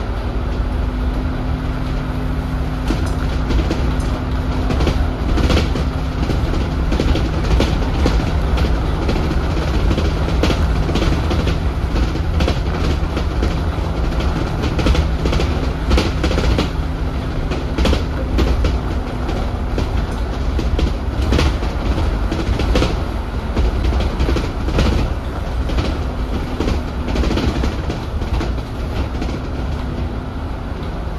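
Cabin of an Alexander Dennis Enviro400 double-decker bus on its E40D chassis under way: a steady engine and road rumble with a low hum that holds for long stretches and fades in and out, and frequent clicks and rattles from the bodywork and fittings.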